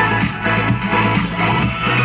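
Electronic dance music with a steady beat and strong bass, played loud through a Tronsmart T7 Mini Bluetooth speaker.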